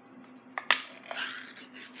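A small metal cat food can being opened: a sharp click about two-thirds of a second in as the lid is broken, then a short scraping, tearing sound as the lid comes away, with a few smaller clicks.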